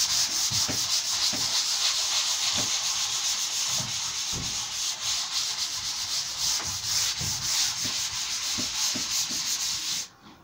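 Hand sanding the primed face of an MDF cabinet door with 320-grit paper on a small pad: steady dry rubbing in back-and-forth strokes, about one to two a second. The paper is flatting back the coat of two-part PU primer before the next coat.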